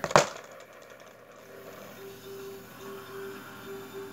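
A sharp plastic knock as the Bean Boozled spinner is flicked. It is followed by a faint, steady held tone that breaks off a few times.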